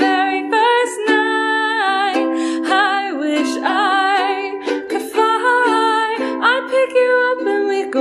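A woman singing, holding notes with a wavering vibrato, over a strummed ukulele accompaniment.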